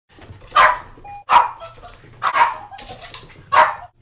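A dog barking: four loud single barks, roughly a second apart.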